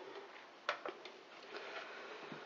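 A few faint clicks and light knocks from hands handling a plastic spiral vegetable slicer and its potato, the sharpest click about two-thirds of a second in.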